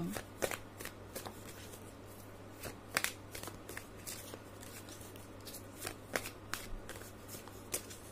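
A deck of tarot cards shuffled by hand: irregular sharp card snaps and slides, the loudest about three seconds in, over a faint steady hum.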